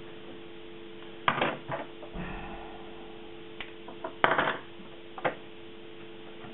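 A few short metallic clinks and clatters of tools and wire leads handled on a workbench, the loudest about four seconds in, over a steady low hum.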